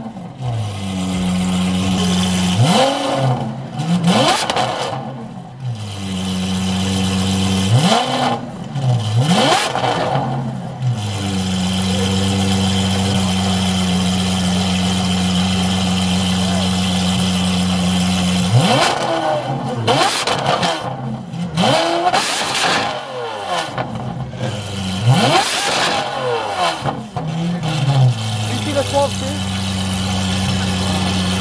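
Lamborghini Aventador SVJ's V12 idling steadily, revved repeatedly in quick throttle blips: a short group of revs near the start, more around eight to ten seconds in, and longer strings of blips in the second half.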